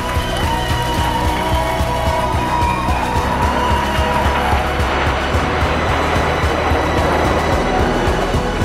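Background music with the rushing noise of a jet aircraft passing overhead, swelling through the middle and fading near the end.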